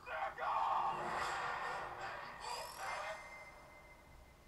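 Trailer soundtrack playing back, quieter than the voice around it: music and sound effects with a rising glide a little after two seconds, then fading away near the end.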